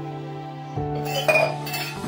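Background music with steady sustained tones, over which metal dishes clink together a few times at the sink in the second half, the loudest clink partway through.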